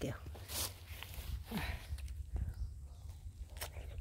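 A crisp sweet persimmon being bitten and chewed: a crunchy bite about half a second in, another about a second and a half in, then quieter chewing with a few small clicks near the end.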